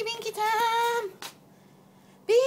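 A high singing voice holding a long, steady note that breaks briefly and then stops about a second in.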